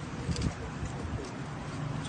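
Steady low background noise with faint voices and a brief bird-like cooing call.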